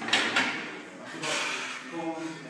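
A weightlifter's forceful breaths under a loaded barbell: two sharp, hissing exhalations about a second apart as he strains with the bar racked on his shoulders.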